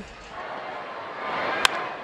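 Ballpark crowd noise swelling, then a single sharp crack of a wooden bat hitting a pitched baseball about one and a half seconds in: a home run swing.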